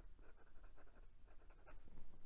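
Sheaffer ICON fountain pen with a Chinese steel Bobby Bent nib writing on lined notebook paper: faint nib-on-paper scratching in a run of short strokes. The nib writes wet and smooth.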